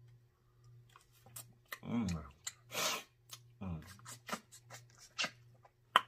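Close-up eating sounds of snow crab being picked and eaten: scattered small clicks and cracks of shell and mouth smacks, a hummed "mm" about two seconds in, and a short breathy hiss just before the three-second mark.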